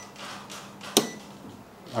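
A single sharp click about a second in, the RC truck's ESC power switch being flicked on, with faint handling noise around it.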